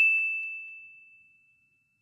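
A single bell-like ding sound effect: one high ringing tone that fades out over about a second and a half.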